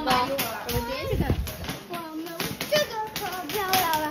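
People's voices talking and calling out over one another, too jumbled for words to be made out, with repeated sharp clicks or pops among them.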